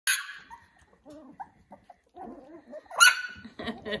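Young Cavapoo puppies yipping: a sharp high yelp at the very start and a louder one about three seconds in, with small squeaks and whines between. A woman's laugh begins near the end.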